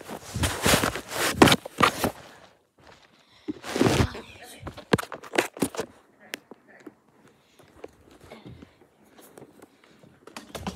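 Blankets and fabric rustling and rubbing against the phone's microphone as someone scrambles out of a blanket fort, loudest in the first two seconds and again about four seconds in. A run of knocks and footsteps follows, getting quieter over the last few seconds.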